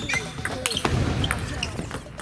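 Table tennis ball clicking off rubber bats and the table in a rally, several sharp clicks spread through the two seconds, with voices in a large hall.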